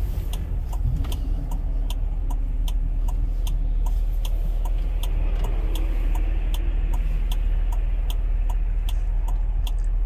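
Car turn-signal indicator ticking steadily, about three clicks a second, over the low rumble of the engine idling while the car stands still.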